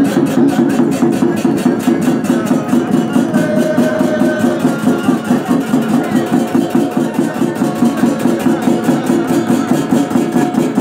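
Ritual drumming with jingling bells by costumed shamans, a fast even beat of about four strokes a second.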